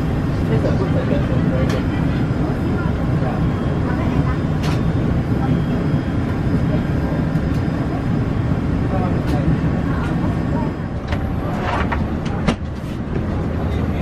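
Steady low rumble of the cabin ventilation in a parked Airbus A350-900 airliner, with indistinct voices in the background. A few sharp clicks or knocks come near the end.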